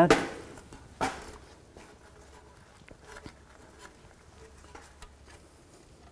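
Two light metallic clinks, one just after the start and one about a second in, then faint scattered ticks: exhaust flange bolts being handled and fitted by hand at a catalytic converter joint.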